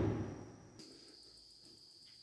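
The dying tail of a clatter as a plywood sheet is set down on the fibreglass boat hull, fading within about half a second. Then near silence with a faint steady high-pitched tone.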